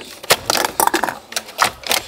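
Ice cubes clattering into a cup: an irregular run of about half a dozen sharp clinks and knocks.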